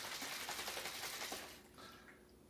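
Plastic bottle of liquid oral suspension being shaken hard to mix it, the liquid sloshing in quick repeated strokes; the shaking stops about a second and a half in.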